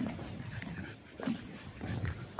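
A dog making a few short, soft sounds, with small noises at the start and a little past a second in.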